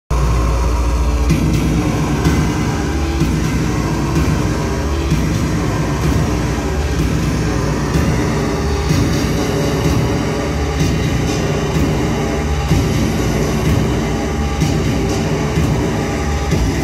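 Loud live electronic music: a dense, rumbling low drone with scattered clicks and clatter over it, no vocals yet.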